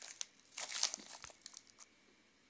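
Plastic snack-bar wrapper crinkling as it is turned in the hand: a run of crackles, loudest a little over half a second in, dying away near the end.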